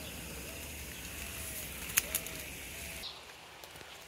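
Soft cooing of a dove in the background, a series of short, low, arched coos, over a steady low outdoor rumble. A single sharp click about two seconds in. The rumble drops away near the end.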